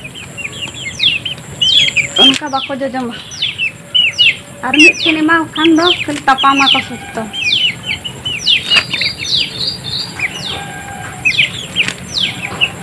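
Young chicks peeping over and over, each peep a short call sliding downward in pitch. A few lower, voice-like calls come in about two to three seconds in and again around five to seven seconds.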